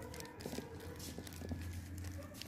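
Butter paper crinkling and rustling faintly in scattered small crackles as it is peeled off the surface of frozen ice cream in a plastic tub, over a low steady hum.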